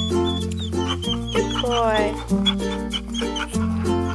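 Ukulele background music with a steady pulse. Over it, a dog gives a squeaky, whining yawn, with high squeaks early on and a pitch-gliding whine about two seconds in.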